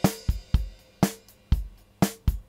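Multitrack acoustic drum kit recording played back dry with no compression: a steady beat of kick, snare and cymbals, about two hits a second, with a ringing hit about once a second.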